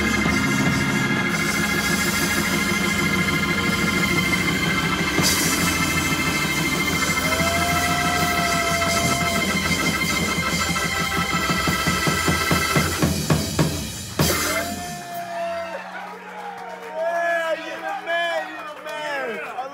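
Hammond B3 organ holding a sustained chord over a fast, dense drum-kit roll, ending with a big final hit about 14 s in that closes the tune. Then the audience whistles and cheers.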